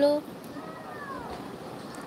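A baby's faint coo, one drawn-out sound that rises and falls in pitch, just after a woman's held word breaks off at the very start.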